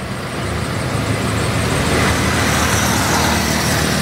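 Street traffic: a car approaching close by, its engine and tyre noise growing steadily louder.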